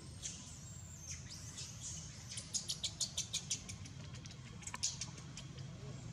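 Newborn baby macaque crying in thin, high-pitched squeaks, with a quick run of short squeals about halfway through: distress calls while its mother grips and handles it.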